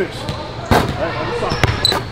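Basketball bouncing on a hardwood gym floor: three sharp bounces, the loudest about three quarters of a second in, then two more about a second later.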